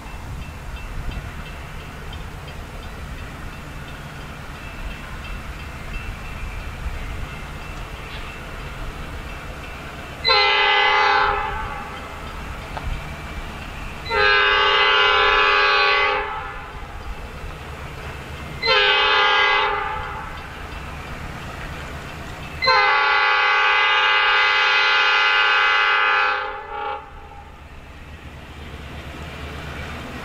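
EMD GP38 diesel locomotive sounding its multi-chime air horn in the grade-crossing pattern: long, long, short, and a final long blast of about four seconds, the first starting about ten seconds in. Underneath runs the low rumble of the approaching diesel locomotives.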